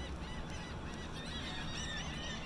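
A flock of birds calling over one another in many short, rising-and-falling calls, over a steady low hum of ship machinery.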